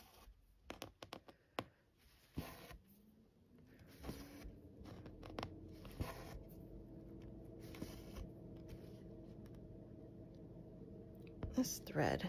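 Cross-stitch needle and embroidery floss being pulled through Aida cloth: several short rasping pulls, with a few sharp taps in the first two seconds. A steady low hum comes in about three seconds in, rising slightly in pitch and then holding.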